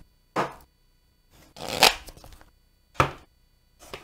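Crystal Visions tarot deck being shuffled by hand: about four short rustling bursts of cards sliding against each other, the strongest just before two seconds and about three seconds in.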